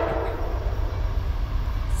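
Approaching diesel freight train: a steady low rumble, with the chord of a locomotive air horn dying away right at the start.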